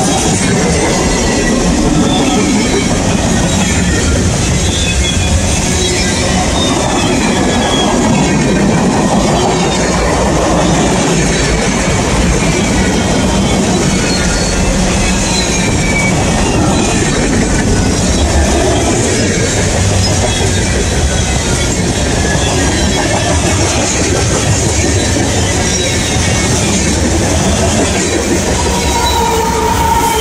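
CSX freight cars rolling past at close range: a loud, steady rumble and rattle of steel wheels on the rails, with faint wheel squeal gliding over it. Near the end a locomotive in the middle of the train draws level, adding steady tones to the noise.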